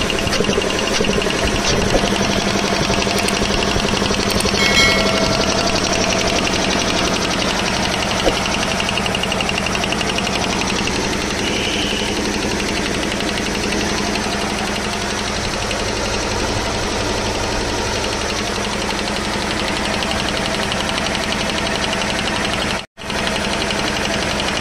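10 HP piston air compressor running steadily after a cylinder-head service, with a low hum under it. One head had not been drawing air and the compressor was making too little air; its sound has changed now that it draws properly. The sound cuts out briefly near the end.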